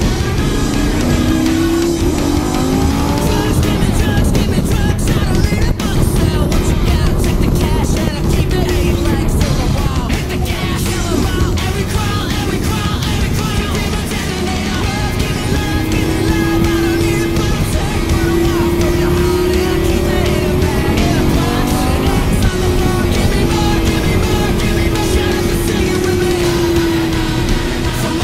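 Lamborghini supercar engine heard from inside the cabin at track speed, revving up through the gears with pitch climbs near the start and again about two thirds of the way in, holding steady between. Music plays over it.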